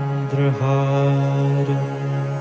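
A man's voice chanting a mantra into a microphone, drawing out a syllable in one long, steady note, with a short dip in pitch and a fresh start about half a second in.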